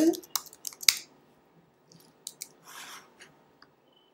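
Computer keyboard keys clicking in a short quick run, then two softer clicks and a brief soft rustle about two seconds in.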